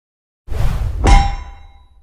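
Intro logo sound effect: a sudden low rumble starts about half a second in, then a single loud metallic clang about a second in rings out and fades away.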